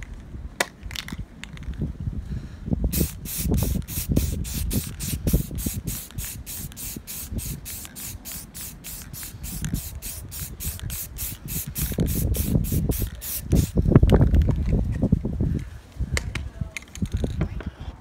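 Aerosol spray can of primer spraying onto a sanded car fender, hissing in quick, evenly spaced spurts of about four a second for some ten seconds. Low wind rumble on the microphone runs underneath and is loudest near the end of the spraying.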